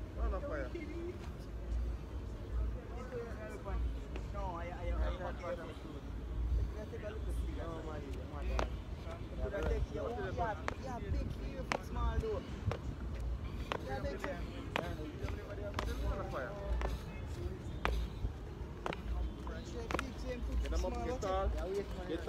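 Voices of people talking at a distance, too faint to make out, over a low pulsing rumble of wind on the microphone, with scattered sharp clicks.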